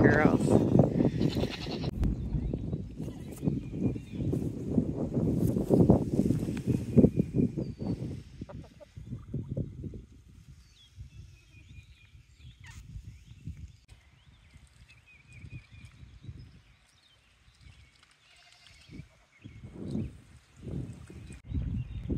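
Goats close by at a wire fence, one bleating at the very start, followed by several seconds of loud, close rustling and movement; after that it turns much quieter.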